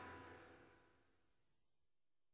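The tail of a song fading out, dying away within the first half second, then near silence: the gap between two CD tracks.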